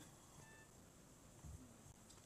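Near silence: room tone, with one faint low bump about one and a half seconds in.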